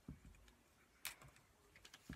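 Faint handling of paper and craft pieces on a tabletop: a soft thump just after the start, a crisp paper rustle about a second in, then a few small clicks near the end.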